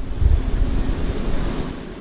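Steady hiss with a low rumble in the first half second that fades: wind-like noise on a handheld microphone.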